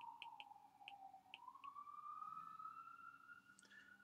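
Faint ticks of a stylus tapping on a tablet's glass screen during handwriting, several in quick succession and then one more near the end. Under them runs a faint steady tone that slides down in pitch and then back up.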